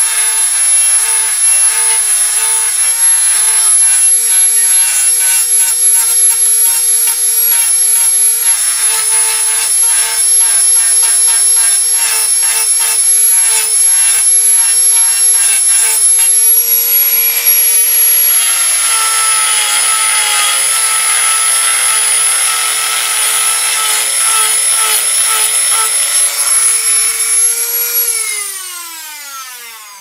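Dremel rotary tool running at high speed with a steady high whine, its bit grinding into the wood of a carved dummy head with scratchy contact noise. Near the end it is switched off and the whine falls in pitch as the motor spins down.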